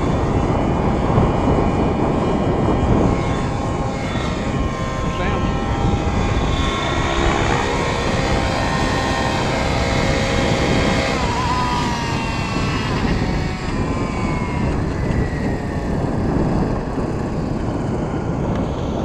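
Nitro RC helicopter (T-Rex 700N DFC with a YS 91SRX glow engine) running in flight, its engine whine rising and falling in pitch as it manoeuvres low and comes down to land.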